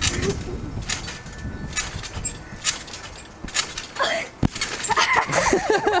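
Trampoline mat and springs thumping with each bounce, about once a second, then a harder thump about four and a half seconds in as a boy lands sitting on the mat after a back flip attempt. A voice laughs near the end.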